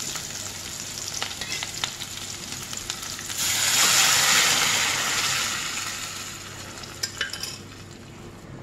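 Shallots, chillies and curry leaves sizzling in hot oil in a steel kadai, with a few light clicks. About three and a half seconds in, the dal-based sambar liquid is poured onto the hot tempering and the sizzle flares loud, then dies away over the next few seconds as the liquid cools the oil.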